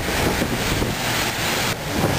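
Strong gusty wind buffeting the microphone, a low uneven rumble, over a steady hiss of heavy rain.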